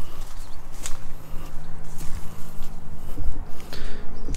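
Footsteps through tall grass and weeds, with a few sharp clicks over a constant low rumble. A faint steady hum comes in about halfway through.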